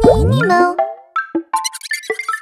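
Children's cartoon logo jingle: a sound sweeping up in pitch right at the start, then a few short bright synth notes, with quick high ticks near the end.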